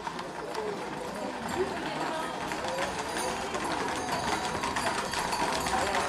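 Crowd voices talking over the clatter of several Camargue horses' hooves on a paved street, getting gradually louder as the horses come closer.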